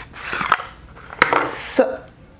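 Cardboard packaging of a foundation bottle being opened by hand: rustling and scraping with a couple of sharp clicks, and a bright papery swish late on. A brief murmur of a voice overlaps the handling in the second half.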